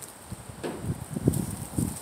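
Wind buffeting the phone's microphone in irregular low rumbles, starting a little after half a second in.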